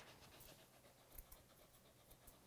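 Near silence, with two faint snips of grooming scissors a little over a second in.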